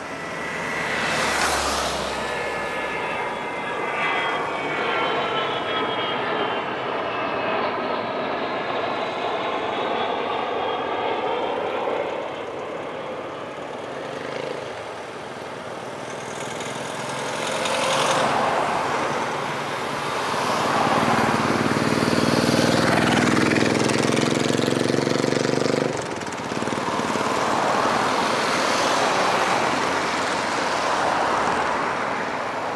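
Avro Vulcan XH558's four Rolls-Royce Olympus turbojets heard as the delta-wing bomber flies past, with a wavering whine whose several tones slowly fall in pitch over the first ten or so seconds. The jet noise swells again about two-thirds of the way in, carrying a lower droning tone that cuts off sharply near the end.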